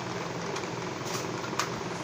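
A steady mechanical hum, like a small motor or room fan, with two faint clicks about one and one and a half seconds in as the plastic supplement bottle is handled.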